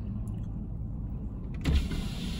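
Steady low hum of a parked car idling, heard from inside the cabin. About one and a half seconds in, a soft thump and the driver's power window starts going down, letting in a steady hiss of outside noise.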